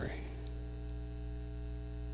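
Steady electrical mains hum, a low buzz made of several evenly spaced steady tones.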